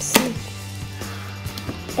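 Small clicks and knocks of plastic Lego pieces being handled and pressed together, over a steady low hum; a sharper knock comes just after the start.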